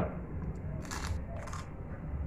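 A man biting into a piece of stewed blue crab: two short crunches about a second in, half a second apart.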